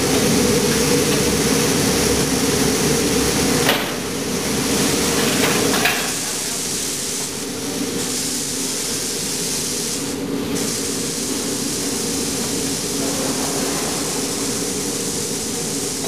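Aluminium die-casting machine running with a steady low hum, under a continuous hiss of release-agent spray and steam off the hot open die. Two sharp knocks come at about four and six seconds, after which the sound is a little quieter.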